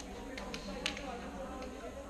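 Indistinct voices in a sports hall, with a few short, sharp slaps of hands as players high-five along a handshake line.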